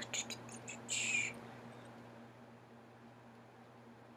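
Quiet room tone with a steady low electrical hum. In the first second or so there are a few faint clicks and one short breathy hiss, then it stays quiet.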